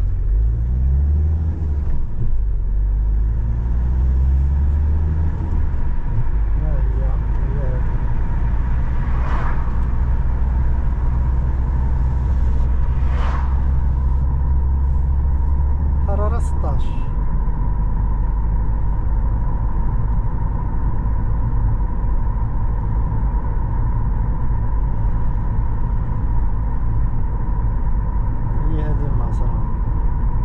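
A car driving steadily on an open road, heard from inside the cabin: a constant low engine and road rumble. A faint steady whine comes in about a third of the way through.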